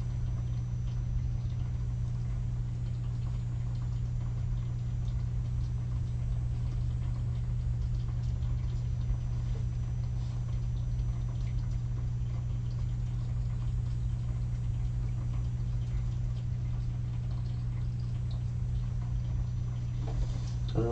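Stampin' Blends alcohol marker nib scratching and tapping lightly on cardstock while colouring, in faint irregular strokes, over a steady low hum.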